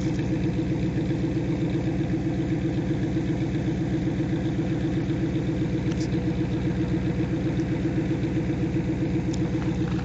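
1995 Pontiac Trans Am's 5.7-litre LT1 V8 idling steadily through a MagnaFlow exhaust, with an even, regular pulse.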